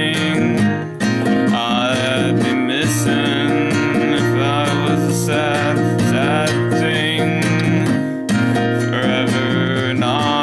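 Nylon-string classical guitar in the alternate DAEAC#E tuning, fingerpicked in a steady, continuous accompaniment. The sound dips briefly about a second in and again about eight seconds in.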